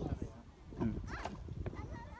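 Young children's voices with a few short knocks of gravel stones against a plastic toy wheelbarrow.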